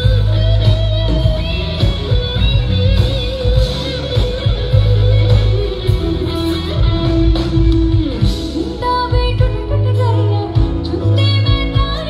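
Live band music played loud through a stage PA: a guitar-led instrumental passage over drums and heavy bass, with a female singer coming back in near the end.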